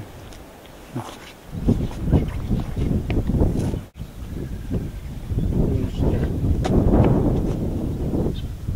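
Low rumbling wind noise on the microphone with scuffs and shuffles of feet on paving stones. The sound cuts out for an instant about four seconds in.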